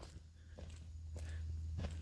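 Soft footsteps on a dirt path and leaf litter, a few faint steps about half a second apart, over a low rumble that grows louder toward the end.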